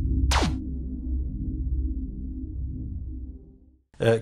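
Short electronic music sting: a fast falling swoosh about a third of a second in, over a low synth drone that fades out just before the end.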